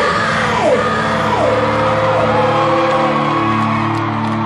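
Live rock band playing loud with electric guitars and drums, a loud hit at the very start, and a yelled female vocal with notes sliding down in pitch.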